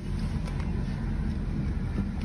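Steady low rumble of a car idling at a standstill, heard from inside the cabin.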